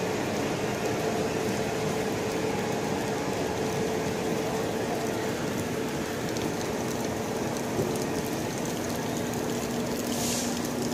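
Steady running hum of an Indian Railways luggage, brake and generator car as the train rolls slowly past, mixed with the hiss of heavy rain. A second low steady tone joins near the end.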